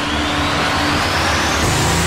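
Trailer sound-design riser: a loud wash of noise that sweeps steadily upward in pitch, over a pulsing bass drone with a held low tone that drops out about a second in.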